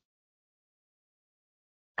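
Near silence: the video call's audio is cut to dead air in a pause between words.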